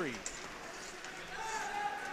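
Ice hockey rink during live play: skates on the ice under a low, even rink noise. About a second and a half in, a steady held tone begins and keeps going.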